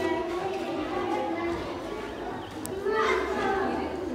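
Speech: a young child speaking into a microphone over a PA, with other children's voices around.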